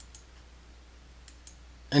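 Three faint computer mouse clicks, one just after the start and two close together about a second and a half in, as a vendor is chosen from a drop-down list.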